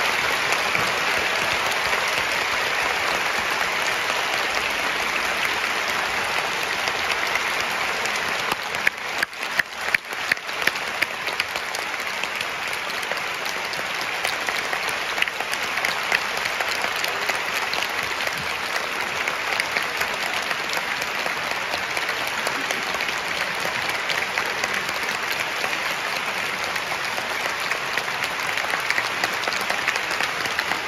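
A large audience applauding steadily. About nine seconds in, the applause thins for a moment to a few separate sharp claps, then fills out again.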